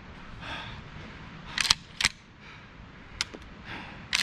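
Metal clicks of a CZ 1012 12-gauge autoloading shotgun's action being worked by hand: a quick cluster of clicks, then a single sharp clack about a third of a second later, and a couple of lighter clicks about a second after that.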